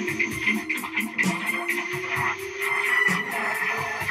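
Live improvised psychedelic rock jam: a held note slowly bends down and back up over busy drums and cymbals.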